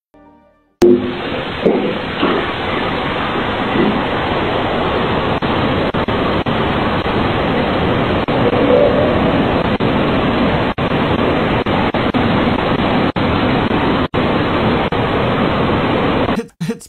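Steady rushing noise on a doorbell camera's audio track, starting about a second in, with a few brief dropouts along the way: the odd noise heard on the footage.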